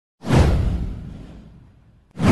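Whoosh sound effect of an animated intro, with a deep low end: one sudden swell about a quarter second in that fades away over the next second and a half.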